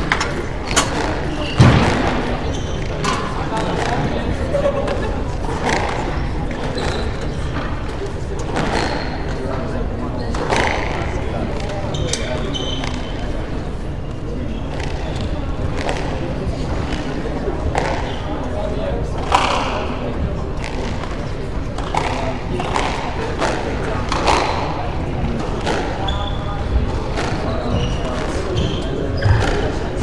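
Squash balls striking walls and floors on neighbouring courts, sharp thuds every second or two with an echo, over the chatter of people in a large hall. A loud knock about two seconds in stands out above the rest.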